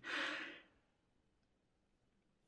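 A man's short breath out in a pause between sentences, lasting about half a second, then near silence.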